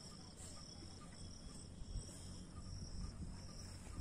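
Insects trilling steadily in a faint, high-pitched continuous note broken by short, regular gaps, over a low rumble.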